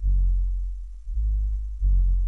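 Music with deep bass notes played through a car stereo's two DB Drive Platinum 15-inch subwoofers on an Audiobahn 3000-watt amp, heard inside the car. One bass note hits at the start and another about a second in.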